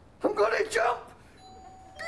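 A short vocal exclamation, then about one and a half seconds in a doorbell rings with one steady tone that carries on.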